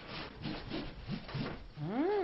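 Repeated scraping strokes, about three a second, like something rubbed back and forth over wood.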